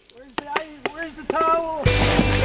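Several short, high-pitched vocal yelps, each rising and falling in pitch, with a few sharp clicks between them. Music starts just before the end.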